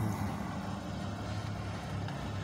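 Steady low motor-vehicle hum heard from inside a car cabin.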